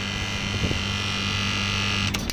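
Air-conditioner outdoor unit's compressor running with a steady electrical hum and a high whine above it, while the condenser fan motor stays stopped: the fan has failed, with an open-circuit winding.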